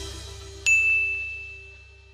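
Subscribe-button sound effect: a single bright bell-like ding about two-thirds of a second in, ringing out and fading slowly, over a low steady hum.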